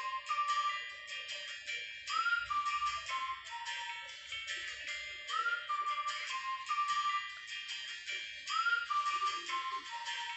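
Background music: a short whistle-like melody, sliding up into each phrase, repeats about every three seconds over a light, steady beat.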